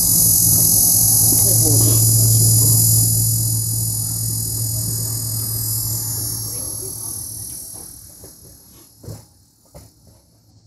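Field recording of a cricket chorus played back over loudspeakers: many overlapping high, steady insect trills layered together over a low hum. It starts suddenly, holds for about three seconds, then fades gradually.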